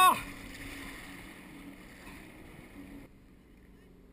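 Tow boat's engine running with a steady low hum that slowly fades, with a brief burst of a person's voice right at the start. About three seconds in the sound drops off suddenly to much quieter.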